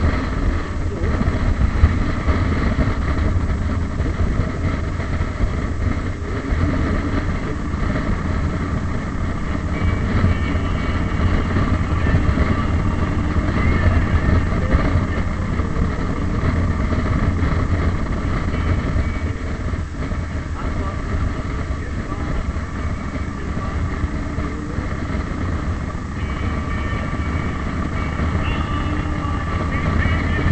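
Vehicle under way on a road, heard from an onboard camera: a steady low engine drone with road and wind noise, dropping slightly in level about twenty seconds in.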